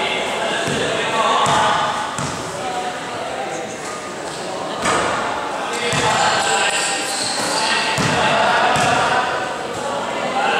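A basketball bounced several times on an indoor gym court, over continuous talking voices that echo in the hall.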